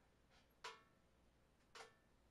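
Near silence with two faint, brief clicks about a second apart: small handling sounds from a pistol slide held in the hand.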